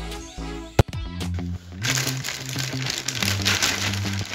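Background music with steady held bass notes; a single sharp click just under a second in, then from about two seconds in a plastic carrier bag crinkling as a framed painting is slid out of it.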